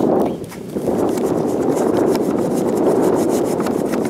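Strong wind buffeting the microphone, a loud rushing rumble that dips briefly about half a second in, with faint crackling ticks above it.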